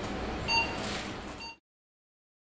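Operating-theatre room noise with a couple of short electronic beeps from equipment, cut off abruptly to silence about one and a half seconds in.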